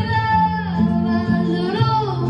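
A recorded song playing, a singer holding long, gliding notes over guitar and a bass line that changes note every half second or so.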